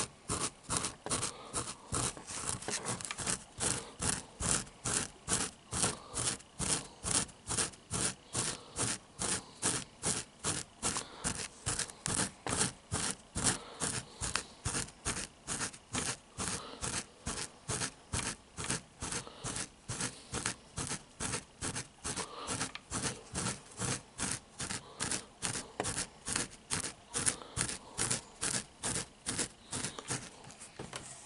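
A hand rubbing right up against the microphone in quick, even strokes, about two a second, each a short scratchy swish.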